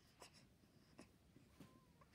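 Near silence between a newborn's grunts: a few faint clicks and a short, faint high squeak near the end.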